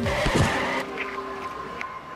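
Street-traffic sound effect in a radio road-safety spot: a car going by in a rush of noise that fades within the first second, then a single steady high tone over faint background.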